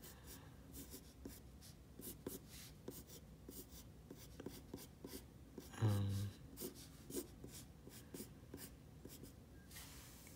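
Graphite pencil scratching on paper in many short, quick strokes as a sketch is drawn. About six seconds in there is a brief low vocal sound, like a hum, which is the loudest moment.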